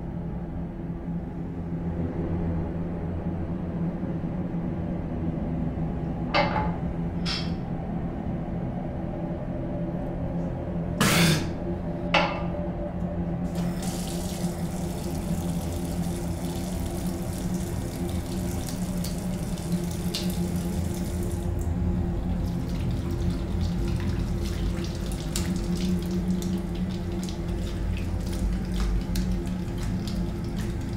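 Bathroom tap running into a sink basin while water is splashed onto the face. A few sharp knocks come first, then the tap is opened a little under halfway through and runs steadily.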